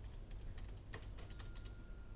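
Computer keyboard being typed on: a run of faint, quick key clicks, thickest about a second in.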